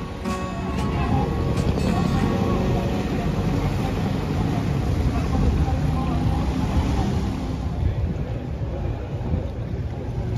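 Small open motorboats running on a canal: a steady low rumble, mixed with voices and some music.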